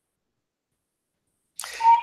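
Dead silence on the video-call audio, then, near the end, a short hiss and a voice beginning to speak.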